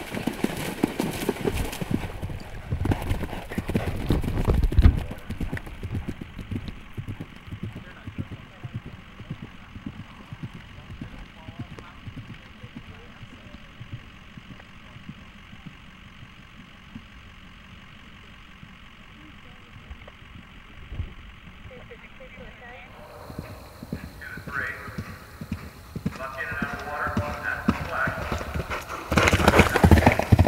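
A horse splashing through shallow water at a canter, loudest in the first few seconds, then galloping hoofbeats on turf. Voices talk over the last several seconds.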